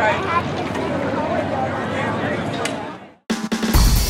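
Voices over outdoor track-side background noise, fading out about three seconds in; after a moment of silence, background music with a steady, heavy beat begins.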